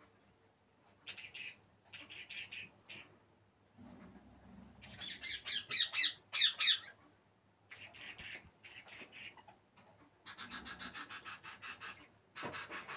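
Budgies squawking and chattering in short bouts, loudest about midway, then a run of fast repeated calls near the end.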